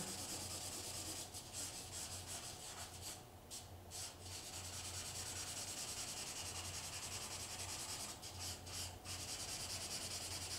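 Drawing crayon rubbing back and forth on a large sheet of paper, laying in shading with quick continuous strokes that pause briefly a few times. A steady low hum runs underneath.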